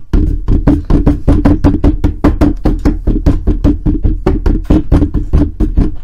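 Computer keyboard typed on fast and hard: a loud, even run of key strikes, about seven or eight a second.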